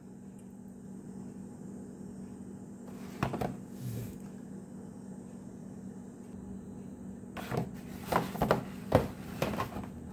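Handling noises from die-cast collector packages: a couple of soft knocks, then a cluster of sharper knocks and rustles near the end as the plastic-fronted blister cards on their metal tins are moved and set down. A steady low room hum runs underneath.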